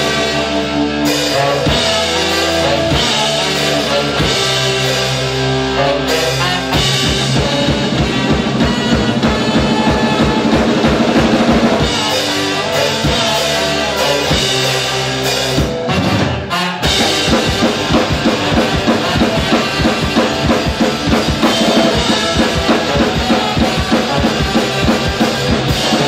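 A live ska-punk band playing an instrumental passage: drum kit, bass and electric guitar with a horn. The drums pick up a fast, steady beat about six seconds in; near the middle the band breaks off for a moment, then comes crashing back in with a hit and plays on.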